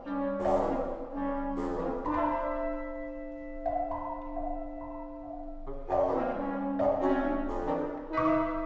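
Wind ensemble of flute, clarinet, bassoon and French horn playing contemporary chamber music. Short accented chords come at the start, a long held chord runs through the middle, and more short accented chords come near the end.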